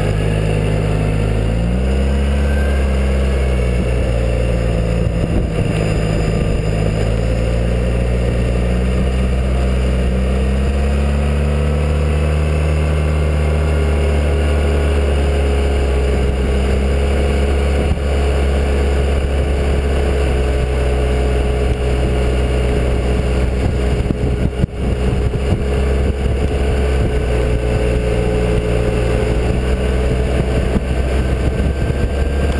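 Suzuki Burgman 650 maxi-scooter's parallel-twin engine running under way, rising in pitch about two seconds in and again around ten to thirteen seconds in, then holding steady, over a constant rush of wind and road noise.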